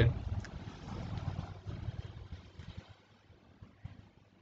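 Faint low rumble of background noise on the narrator's microphone, with a few soft ticks, dying away to near silence after about three seconds.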